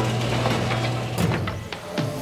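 A garage door sound effect: a steady low motor hum with mechanical rattling and clicks for about a second and a half, then fading.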